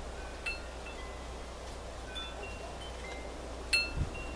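Chimes ringing at irregular moments: clear high metallic tones, with a stronger strike about half a second in and another near the end, each fading out, over a steady low hum.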